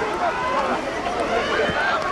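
Several voices shouting and calling out at once over outdoor stadium sound at a football match.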